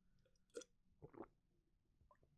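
Near silence, broken by three faint brief clicks: one about half a second in and two close together around one second in.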